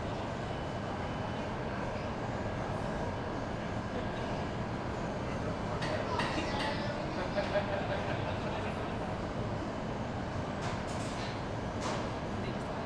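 Steady rumble of a commercial kitchen's background noise, with a short stretch of clatter and faint voices about six to seven and a half seconds in.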